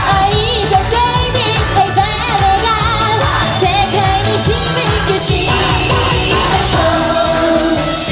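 Female J-pop idol group singing live into handheld microphones over an upbeat pop backing track with a steady beat.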